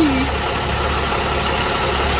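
Semi-truck's diesel engine idling with a steady low drone.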